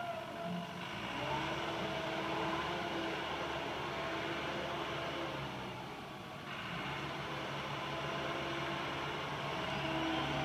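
Case 321D wheel loader's diesel engine running as the loader drives, a steady engine note with a whine over it that shifts a little in pitch. The sound dips briefly about six seconds in.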